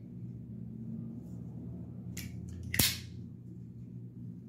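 Cold Steel Ti-Lite 6 folding knife being handled: brief soft rustling, then a single sharp click a little under three seconds in.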